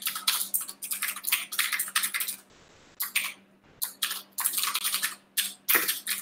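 Fast typing on a computer keyboard: quick runs of key clicks, broken by a brief pause about two and a half seconds in and another shortly before four seconds.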